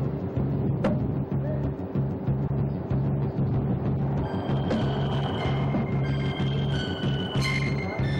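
Tense dramatic background score: a low pulsing beat, about two pulses a second, with high held notes coming in about halfway through and growing louder near the end.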